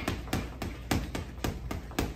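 Boxing gloves striking a hanging heavy bag in a rapid run of punches, about four a second.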